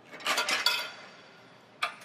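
Metal clinking and rattling with a brief ringing as the forklift's swing-out LP tank bracket is released and swung open, lasting under a second, followed by a single sharp click near the end.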